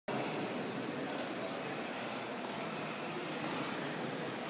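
Small electric RC cars running on an indoor carpet track. Their motors give a faint, high whine over a steady, even noise.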